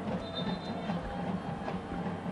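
Steady background ambience of a football ground during play: faint crowd and pitch noise over a low hum, with a faint high tone briefly about a quarter of a second in.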